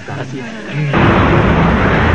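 Outdoor street noise, a steady rushing hiss with a low rumble of traffic, cutting in suddenly about a second in; before it, faint voices.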